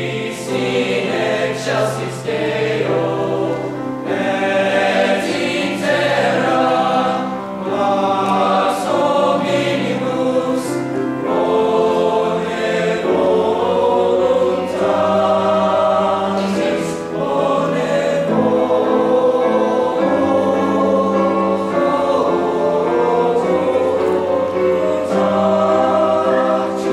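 High school men's choir singing held chords in parts, with grand piano accompaniment.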